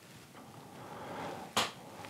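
A single short, sharp click about one and a half seconds in, after a faint breath, in a pause between spoken sentences.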